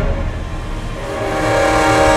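Layered French horns holding a flutter-tongued brass chord that swells from soft to loud.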